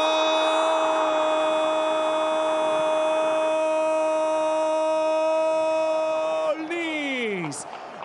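A football commentator's long drawn-out goal cry, "Gooool", held on one high note for about six and a half seconds, then falling away in pitch near the end as his breath runs out.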